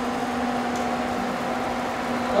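A steady mechanical hiss with a low, even hum under it.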